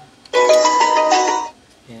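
Olike portable Bluetooth speaker playing its short electronic power-on jingle, a quick run of tones lasting about a second, loud through its own driver. It is the sign that the speaker, whose fault was its power switch, now switches on.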